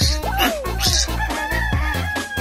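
Background music with a steady beat, with a rooster crowing over it: falling calls near the start, then one long held note in the second half.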